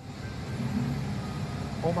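Phone-recorded street noise: a truck's engine running as a steady low rumble under an even hiss.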